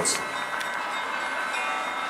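Steady outdoor city background with several faint, sustained ringing tones over it.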